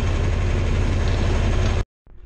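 John Deere 4020 tractor engine running steadily while towing a disc harrow. The sound cuts off abruptly near the end.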